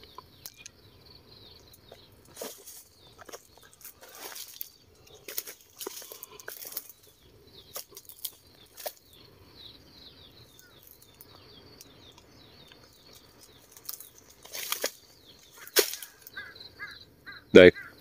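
Irregular rustling and crunching of footsteps and brushing through dry leaf litter and undergrowth, a few louder brushes in between. A faint steady high-pitched chirping runs underneath throughout.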